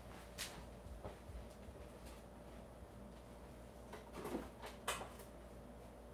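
Faint, scattered knocks and handling sounds of someone rummaging for supplies away from the microphone, over a low steady room hum.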